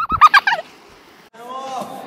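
High-pitched, rapid cackling laughter: a quick run of short 'ha' pulses, about eight a second, that stops about half a second in.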